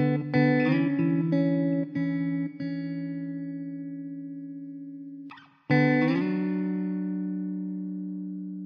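Background music of plucked guitar: several notes in quick succession in the first few seconds, then a held chord fading slowly. A short break about five seconds in, then a new chord rings out and fades.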